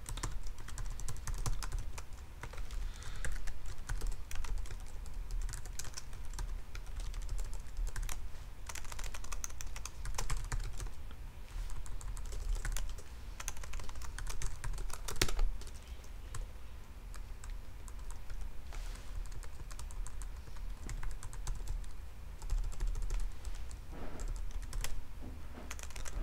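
Computer keyboard typing: irregular runs of keystroke clicks with short pauses between them, over a low steady hum.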